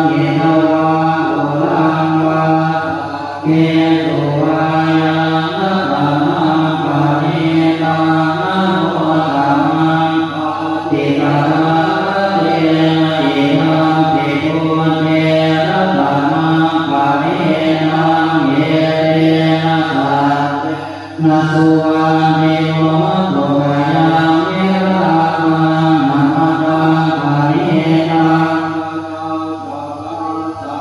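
Group of Thai Buddhist monks chanting the evening service (tham wat yen) together on a low, near-steady recitation tone, pausing briefly for breath about three and a half seconds in and again about twenty-one seconds in.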